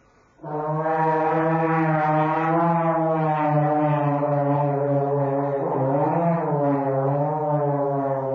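Trombone holding one long low note, entering about half a second in after a brief pause, with a short waver in pitch about six seconds in.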